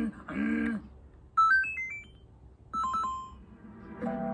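A brief voice, then a quick run of short electronic beeps stepping up in pitch about a second and a half in, followed by a few more beeps near three seconds.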